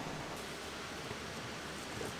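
Steady, even outdoor background hiss with no distinct sound standing out.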